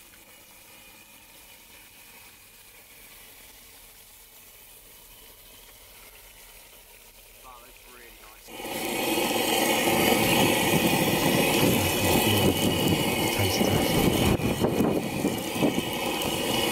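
Fish fillets frying in hot olive oil in a pan on a camping gas stove, sizzling loudly from about halfway through after a faint start.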